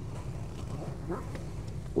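Soft rustle of heavy nylon as a GoRuck GR1 backpack's zippered clamshell panel is pulled open, faint over a steady low outdoor rumble.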